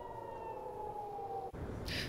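Air-raid warning siren sounding a steady, slowly falling tone, cut off suddenly about a second and a half in.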